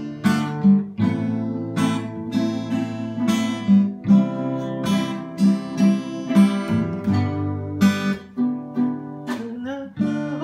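Acoustic guitar strumming chords in a steady rhythm, each strum ringing into the next.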